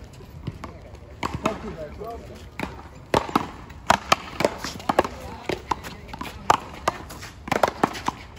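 One-wall paddleball rally: the ball is struck by paddles and slaps off the wall in a quick run of sharp cracks, starting about a second in and coming thick and loud through the middle and end, with shoes scuffing on the concrete court.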